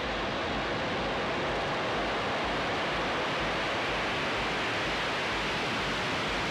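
Falcon 9 first stage's nine Merlin engines at full thrust during liftoff: a dense, steady rush of noise that comes in suddenly and holds at an even level.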